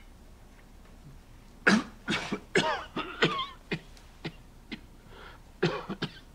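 A man coughing into a napkin: a hard fit of coughs beginning about two seconds in, trailing off into single coughs.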